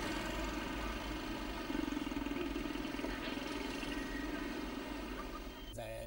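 Road traffic on a city bridge: motor vehicle engines running steadily, with a passing motor scooter. Near the end it cuts to a quieter room.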